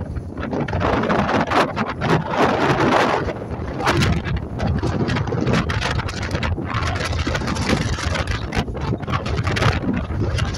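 Wind buffeting the microphone in uneven gusts on the open deck of a Wightlink catamaran under way, over the steady low drone of its engines and rushing water.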